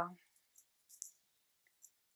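The end of a woman's spoken word at the very start, then four or five faint, small, sharp clicks spread over the next two seconds, the loudest about a second in.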